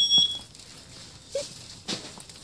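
A loud, high-pitched electronic beep that cuts off just after the start. It is followed by low background noise, a brief low blip and a sharp click near the end.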